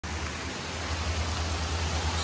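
Steady rush of a flooded, fast-running creek, with a low rumble underneath.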